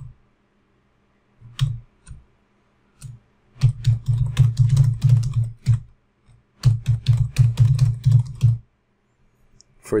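Typing on a computer keyboard: a few single keystrokes, then two quick runs of keystrokes about two seconds each, as a password is typed and then typed again to confirm it.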